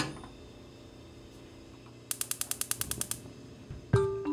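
Gas stove's electric spark igniter clicking rapidly, about a dozen clicks in a second, as the burner is lit, followed by a sudden louder thump near the end.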